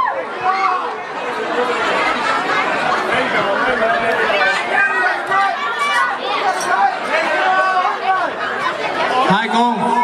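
Many voices of a crowd of guests talking and calling out over one another in a large, echoing hall; near the end one voice holds a long, steady call.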